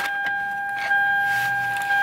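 A steady electronic beep tone held at one pitch without a break, starting abruptly.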